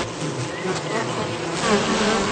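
Honeybee buzzing in flight, its wingbeat drone wavering and gliding up and down in pitch.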